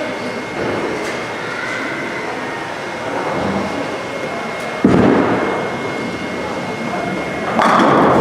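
A bowling ball dropped onto the lane with a sudden thud about five seconds in, rolling down the lane and crashing into the pins near the end, over the steady background din of a bowling alley.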